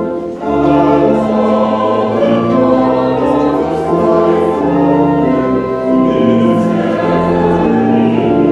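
Congregation singing a hymn in sustained held notes with organ accompaniment. There is a short break between lines about half a second in.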